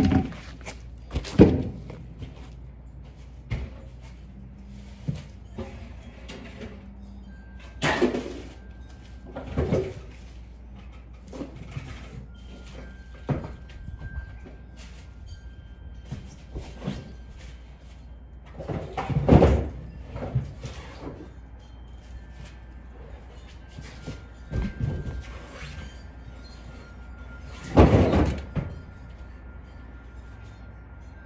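Irregular heavy thunks and clunks of wheel, tyre and tool handling on a car with its wheel off, about half a dozen loud knocks spread out with quieter knocks between, over a steady low hum and faint background music.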